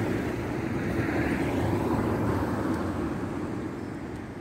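Engine noise of a passing motor vehicle, a steady rumble that swells slightly and then fades toward the end.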